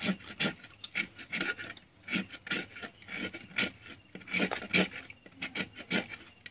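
Knife blade scraping a coconut's shell in short repeated strokes, about two a second.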